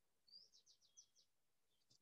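Near silence, with a faint bird chirp about half a second in: a rising note, then a quick run of four or five short notes.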